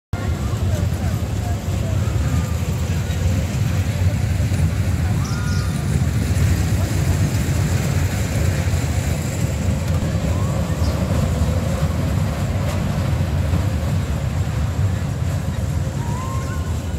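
Funfair ambience: a steady low machine rumble under scattered crowd voices, with a few brief high arched tones.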